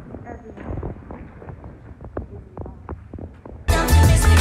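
Handheld phone recording while walking in a large hall: a low rumble of handling noise with irregular soft knocks. Near the end, pop music starts suddenly and much louder.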